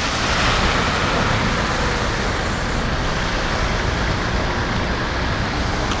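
Road traffic noise: a steady, even noise of cars on the street, swelling slightly in the first second or two.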